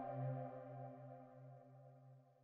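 Closing music: a sustained chord of held tones over a slowly pulsing low note, fading out.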